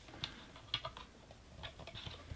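Faint, scattered light clicks and taps of a hard plastic toy car being handled by fingers as a thin string is fitted into a hole in its underside.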